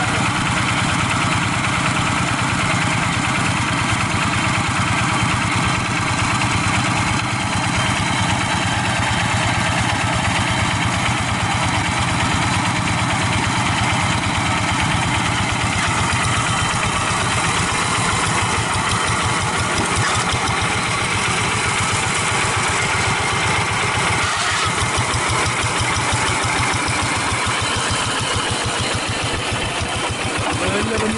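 Single-cylinder diesel engine of a two-wheel hand tractor running steadily with an even firing beat, which becomes more distinct about three quarters of the way through.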